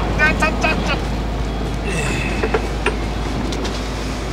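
Steady low rumble of a fishing boat's engine running, under a brief "hai hai" at the start.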